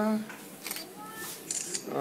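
A voice trails off, then a quiet lull holds a few faint short puffs of breath as a small child blows at the candles on a birthday cake.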